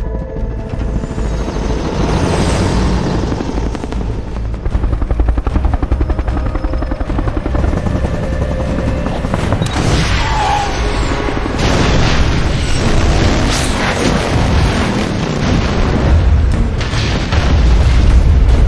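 Action film soundtrack: a military UH-1 Huey helicopter's rotor thudding under a dramatic music score, with heavy booms, the loudest being a large explosion near the end.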